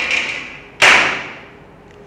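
Two sudden knocks from whiteboard markers being handled, one at the start and a louder one a little under a second in, each trailing off over about half a second.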